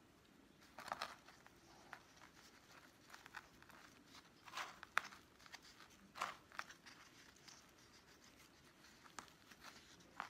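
Faint, scattered rustles and crunches of hands working perlite-flecked potting mix around a spider plant in a small pot, firming the soil; a few louder handling noises about a second in and again around five and six seconds in.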